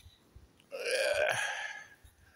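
A man's single breathy, throaty vocal sound, not a word, lasting about a second and starting just under a second in.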